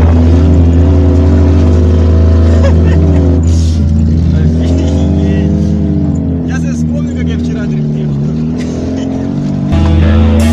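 Car engine heard from inside the cabin, revving up and down as the car is slid sideways on dirt with a welded differential, with voices over it. Louder music cuts back in near the end.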